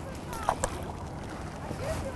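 Stand-up paddleboard paddle dipping and drawing through calm river water, quiet, over a faint steady hiss, with a couple of small clicks about half a second in.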